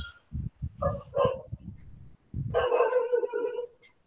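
An animal calling over a video call's audio: two short high calls about a second in, then one longer held call near the end.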